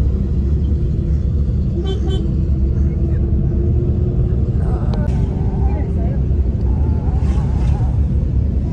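Car cabin road and engine noise while driving: a steady low rumble heard from inside the moving car.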